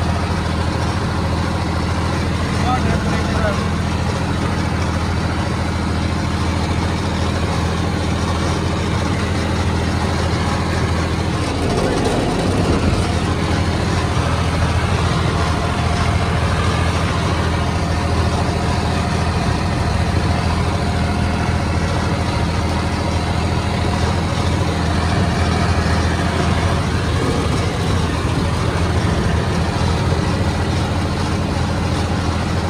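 John Deere 5050D tractor's three-cylinder turbo diesel engine running at a steady, unchanging pitch while pulling a 7-foot rotavator through the soil. Its speed holds with no drop under the load.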